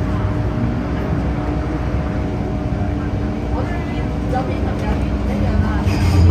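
MTR M-train electric multiple unit running, heard from inside the car: a steady low rumble of wheels on rail with a constant motor hum, and a few faint, brief high wheel-squeal tones in the second half.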